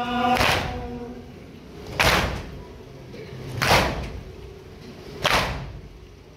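Mourners doing matam, striking their chests in unison with a sharp slap about every one and a half seconds, four strikes, keeping time for a nauha lament. A male voice chanting the nauha ends about a second in.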